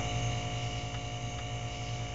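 Steady electrical mains hum, with a band of constant thin tones above it, that stays the same throughout. It is most likely the electric hot plate, switched on to heat and evaporate the acid solution.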